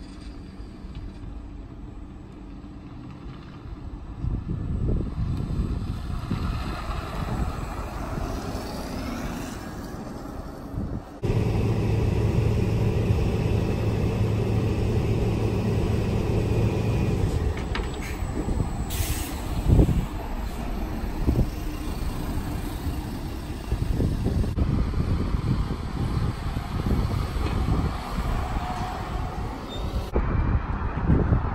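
VDL Citea electric city and regional buses at stops and on the road: a steady low hum from buses standing by, with a short air-brake hiss about two-thirds of the way through, followed by a sharp knock and general road traffic.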